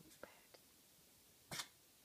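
Near silence: room tone, with a couple of faint clicks and one short rustle about a second and a half in.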